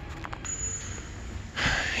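Faint outdoor background noise with a few light handling clicks, then a sharp in-breath near the end, just before speaking.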